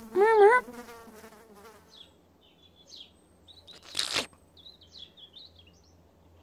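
A high, wavering cartoon chick call ends just after the start and trails away. Faint, scattered high chirps follow over a quiet background, with one short hissing rush about four seconds in.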